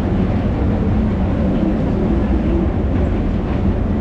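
Escalator running at an elevated Skytrain station: a steady low rumble and hum with a faint mechanical whir.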